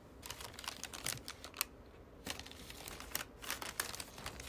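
A pen writing by hand on a photo print: a quick, irregular run of small clicks and scratchy strokes, with short pauses in between.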